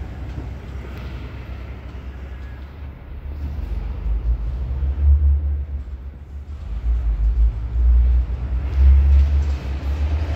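A low, uneven rumble that swells and fades, loudest about five seconds in and again from about seven seconds to near the end.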